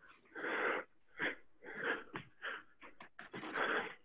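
A man breathing hard, with about six audible breaths in and out, winded from a hopping footwork drill.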